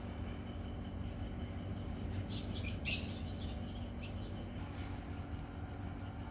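Birds chirping in a quick flurry of short high calls about two to four seconds in, over a steady low rumble.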